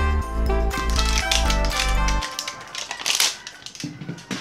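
Upbeat background music that stops about two seconds in, followed by rapid crackling and crinkling of the paper wrapping of a toy capsule being peeled and handled.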